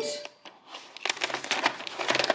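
Cardboard takeaway box with a plastic window being handled and opened: a quick run of crinkles and clicks starting about a second in.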